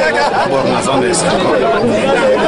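Speech only: people talking over one another in chatter, a man's voice among them.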